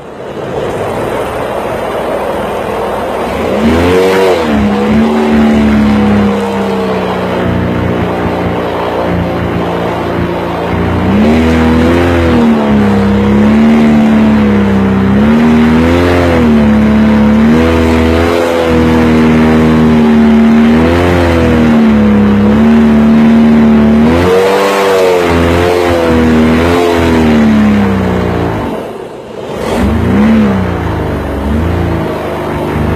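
Boat engine running hard under way. It revs up about three and a half seconds in, then its pitch rises and falls repeatedly as the throttle is worked, easing off briefly near the end before picking up again.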